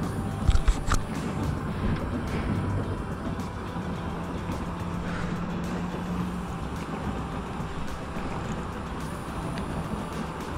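A boat's outboard motor running steadily at low speed under wind and water noise, with a few sharp knocks about half a second to a second in.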